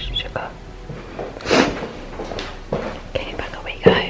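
A woman whispering under her breath, with soft footsteps in oversized shoes on carpeted stairs and one sharp thud near the end.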